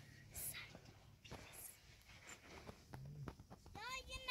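Very quiet with faint whispering, then near the end a short high voice that rises and falls in pitch.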